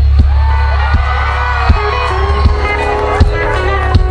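Live band playing softly beneath the talk: held guitar chords over a heavy, steady bass, with a kick drum thumping about every three quarters of a second.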